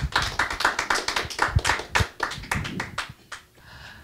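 A small group clapping, the separate claps audible, dying away about three seconds in.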